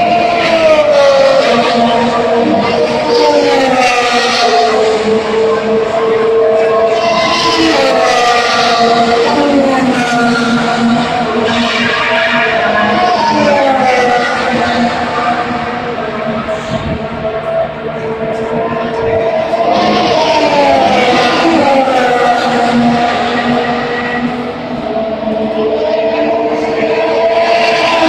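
Formula 1 cars' turbo V6 engines passing at speed along the main straight one after another, each high engine note falling in pitch as the car goes by, the passes following every few seconds with hardly a break.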